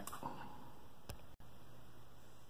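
Quiet room tone with a few faint clicks from a small GPS circuit board being handled in the fingers. The sound drops out for an instant about one and a half seconds in.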